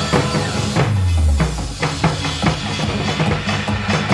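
Korean barrel drums (buk) struck with sticks in a fast, steady rhythm over a loud recorded backing track. A deep low tone slides downward about a second in.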